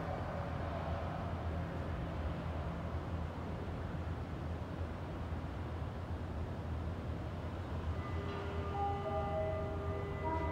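Steady low hum as a cable-less glass elevator car descends on its telescopic frame. Near the end, a few held electronic tones of different pitches sound one after another as the car reaches the bottom.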